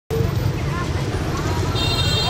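Street ambience of a group of marchers: voices of people walking past over a steady low rumble. Near the end a steady high-pitched tone sets in.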